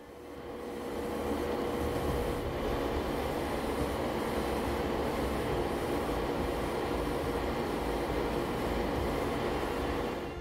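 Airbrush spraying primer, its air supply running: a steady hiss and low rumble with a faint steady hum. It builds over the first second and then holds level.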